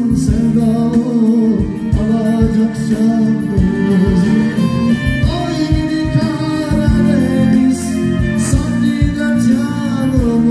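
Live band playing a Turkish song through a stage PA: a male singer over keyboard and a steady drum beat.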